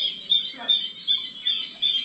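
Recorded bird call played through a nature-center exhibit's push-button speaker: a high, sharp note repeated about three times a second.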